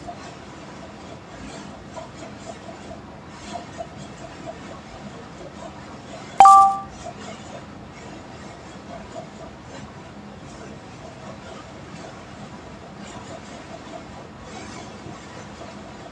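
A single sharp two-note ding, bright and ringing briefly before fading, about six and a half seconds in, over steady low background noise with faint soft ticks.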